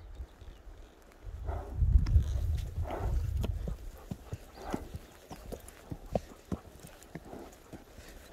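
Hoofbeats of a horse walking along a trail, a steady run of soft footfalls. A low rumble covers the first few seconds.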